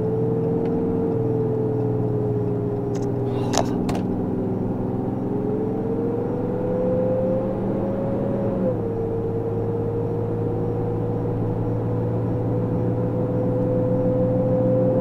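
Engine and road noise heard inside a vehicle's cab at highway speed, a steady hum whose pitch rises over a few seconds and then drops suddenly about nine seconds in.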